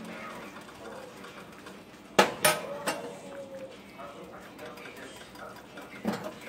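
Spoon knocking against a large stainless steel stock pot: two sharp clinks about two seconds in and a lighter third just after, the pot ringing briefly.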